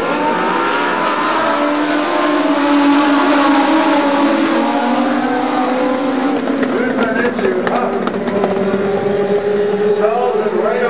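A pack of Legends race cars running hard around the oval, their small motorcycle-derived engines overlapping with pitches that rise and fall as they pass. A few short clicks come about seven to eight seconds in.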